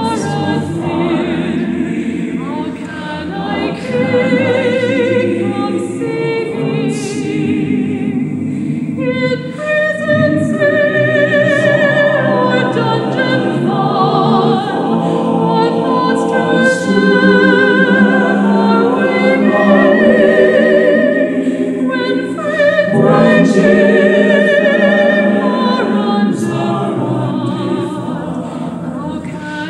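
Mixed choir of women's and men's voices singing a hymn arrangement in sustained, wavering chords, growing louder in the second half.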